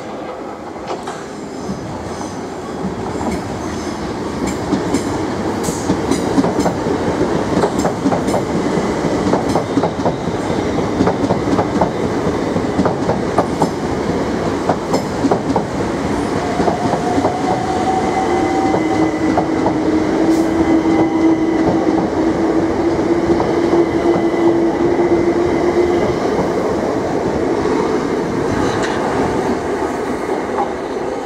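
Southeastern electric multiple-unit trains running close past a station platform. The wheels rumble steadily on the track and click rapidly over rail joints, growing louder over the first few seconds. A steady humming tone joins in about halfway through and lasts several seconds.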